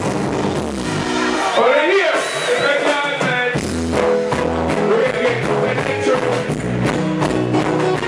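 Live reggae performance over a PA: a singer's voice over amplified backing music. The bass drops out for about two seconds near the start, leaving the voice and higher instruments, then comes back in.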